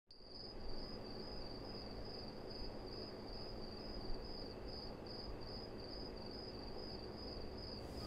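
Crickets chirping in a steady, even rhythm of about two chirps a second, faint, over a low background hum.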